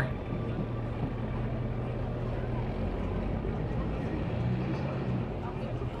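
Ford pickup truck's engine held under throttle while its rear tires spin on the slick, wet boat ramp without getting traction. It runs steadily for a couple of seconds, lets off, then comes on again briefly near the end.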